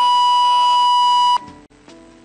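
A loud, steady high-pitched tone with overtones, held on one pitch and then cutting off suddenly about a second and a half in, over quieter worship music.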